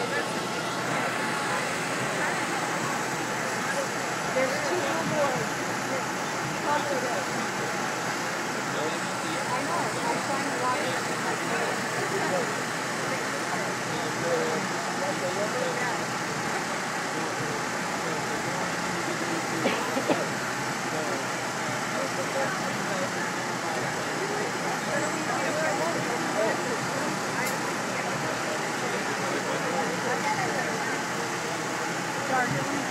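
Busy city street ambience: many people talking at once over steady traffic noise.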